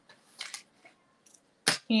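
Quiet room tone with a faint rustle about half a second in, then a single sharp click near the end, just before a woman starts speaking.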